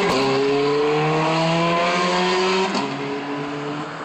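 Ferrari F430 Scuderia's 4.3-litre V8 accelerating hard away, its pitch climbing through the gears with quick upshifts just after the start and about two and three-quarter seconds in. It gets quieter after the second shift as the car pulls away.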